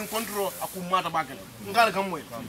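Speech: a person talking in a group conversation, no other sound standing out.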